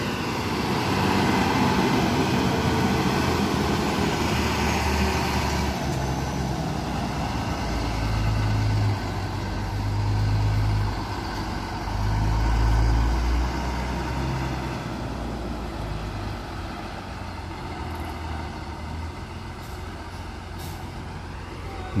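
Intercity coach's diesel engine running as the bus turns past at low speed and drives away, the deep rumble loudest about halfway through and then fading.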